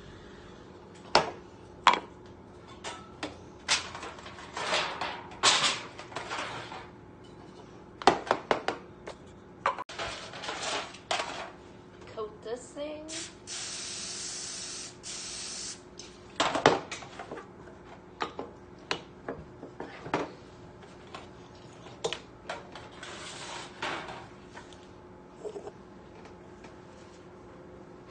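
Aerosol cooking spray hissing once for about two seconds near the middle, greasing a disposable foil cake pan. Scattered knocks and clatter of kitchenware being handled come before and after it.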